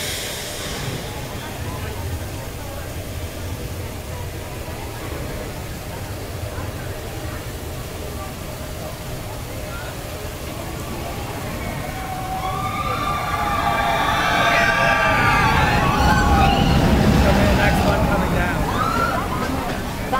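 Expedition Everest roller coaster train running on its track, a low rumble that builds up about two thirds of the way in and is loudest near the end, with many wavering high cries over it like riders screaming.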